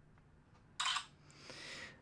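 Silhouette Star handheld wound-imaging camera capturing an image: a short shutter-like burst about a second in, followed by a softer hiss that rises in level.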